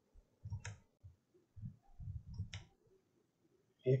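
Two sharp computer mouse clicks, about two seconds apart, as a circle tool is picked and a circle is drawn in CAD software. Faint low noises lie between the clicks.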